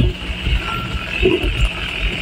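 Truck heard from inside its cab while driving: an uneven low rumble of engine and road, with a steady high hiss above it.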